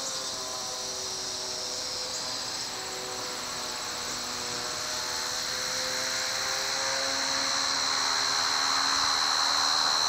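Steady high-pitched drone of summer insects, with a faint low drone underneath; the whole grows gradually louder toward the end.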